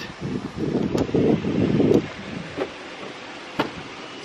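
Wind buffeting the camera microphone in gusts for about two seconds, then dying down to a quieter background broken by a couple of sharp clicks.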